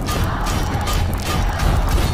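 Dramatic film soundtrack music with a rhythmic metallic clatter of hits, about three to four a second, over a deep steady rumble.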